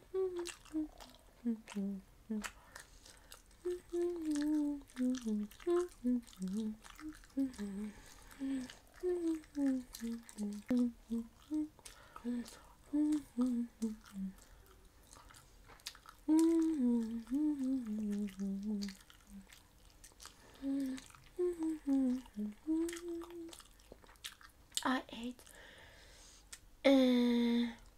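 A woman humming a wandering tune with her mouth closed while she eats, in short gliding notes with brief pauses, loudest a little past the middle. Short clicks of chewing and mouth noises run through it.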